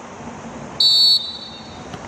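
Referee's whistle: one short, high blast of about half a second, signalling that the free kick may be taken.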